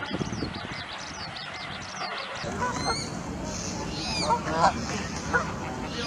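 A flock of bar-headed geese calling: a dense chatter of many small, high calls. About two and a half seconds in it changes abruptly to louder, lower honks from nearer birds, one every half second or so.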